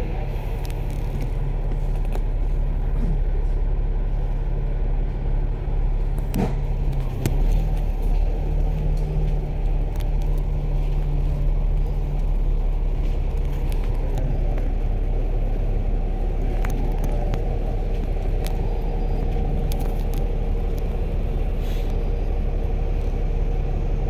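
Bus diesel engine running in slow traffic: a steady low drone that holds level throughout, with a few faint clicks.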